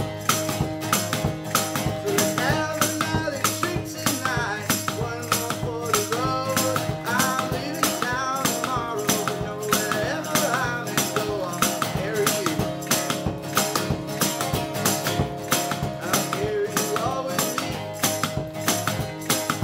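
Strummed acoustic guitar with a harmonica on a neck rack playing a bending melody for roughly the first half, over a steady foot-stomped percussion beat of about three strokes a second.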